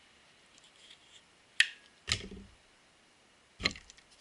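Three short handling sounds from small fittings being worked by hand: a sharp click about one and a half seconds in, then a knock with a brief low thud half a second later, and another knock near the end.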